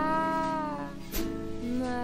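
A female voice singing a wordless line, scooping up into long held notes and sliding between them, over harp accompaniment, with one percussion stroke about a second in.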